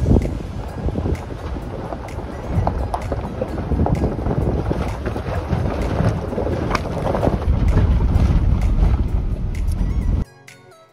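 A pickup truck crawling over a rough, rocky dirt road, its tyres crunching over loose lava rock with scattered clicks and knocks, heavily buffeted by wind on the microphone.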